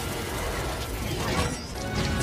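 Film battle sound effects: energy blasts with mechanical clattering and a whoosh about the middle, over orchestral score.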